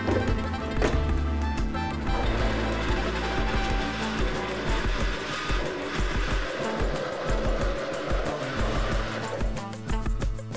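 Blender motor running steadily as it purées a thick mixture of fried peppers, onion, cream and soft cheese into a smooth sauce, under background music.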